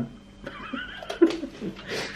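A man laughing quietly, with wordless, wavering vocal sounds.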